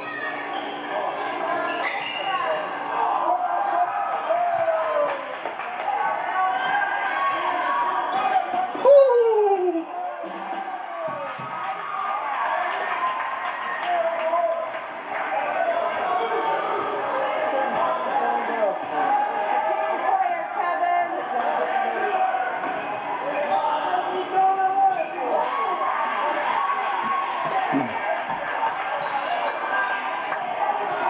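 Gym game sound of a basketball game: many voices calling and chattering in a large echoing hall, with a basketball bouncing on the hardwood court. A brief loud sound about nine seconds in.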